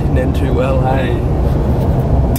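Steady low rumble of a Ford Ranger heard from inside its cab, with a voice speaking briefly in the first second.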